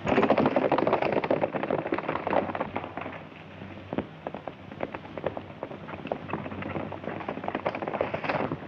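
Hoofbeats of horses galloping along a dirt trail, a dense, irregular clatter that starts suddenly, eases after about three seconds and builds again near the end.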